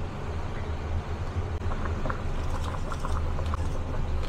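A wok of soup boiling on an induction cooktop: a steady low rumble with faint light ticks.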